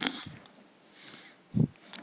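A short sniff from the narrator about one and a half seconds in, in a pause between phrases.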